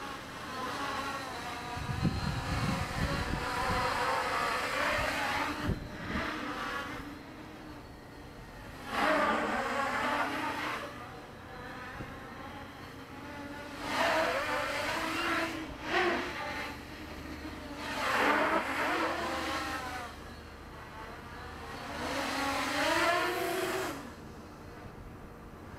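Quadcopter's four Avroto 770kv brushless motors and propellers whining on a 4S pack, the pitch rising and falling in repeated throttle surges about every four seconds. There is a burst of low rumble about two seconds in.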